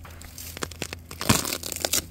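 Soil being dug and scraped away from a cassava root: a run of gritty crunching strikes, sparse at first, then quicker and louder after about a second.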